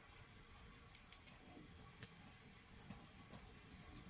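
Small craft scissors snipping frayed cotton string: a few faint, sharp snips, the loudest a quick pair about a second in, over near silence.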